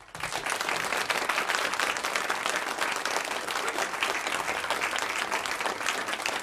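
Audience applauding: dense clapping that breaks out at once and holds steady.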